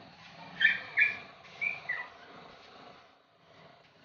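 A bird calling outdoors: four short, high calls in quick succession in the first two seconds, the last one dropping in pitch. A faint, steady background runs beneath them.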